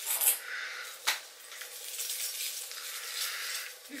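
Rustling of an artificial Christmas tree's plastic branches as baubles are hung on it, with one sharp click about a second in.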